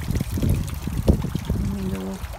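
Water trickling and splashing from an ornamental urn fountain, with crackly low rumbling noise and a sharp knock about a second in. A short held voice sounds near the end.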